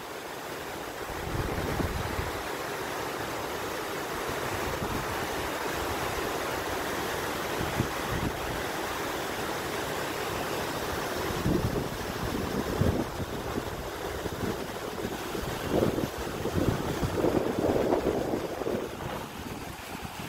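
Steady rush of a waterfall splashing onto a rocky creek bed, with gusts of wind buffeting the microphone, heaviest in the second half.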